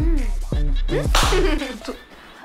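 Background film score with a deep bass and gliding pitched tones, punctuated by two whip-crack hits about half a second apart, fading near the end.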